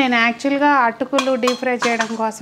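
A woman talking, with a few light metallic clinks in the second second as a steel mesh strainer is set against a steel bowl.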